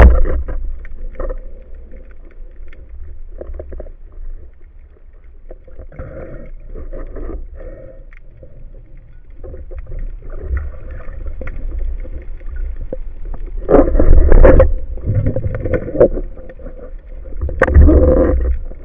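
Underwater recording from a camera on a band speargun: the sharp crack of the shot right at the start, then low rumbling water noise with small knocks as the gun is handled, and louder rushing swells of water about 14 seconds in and near the end.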